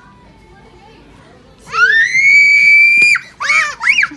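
A young child screaming: after a quiet start, a long, high-pitched scream rises and holds for over a second. A shorter shriek follows near the end.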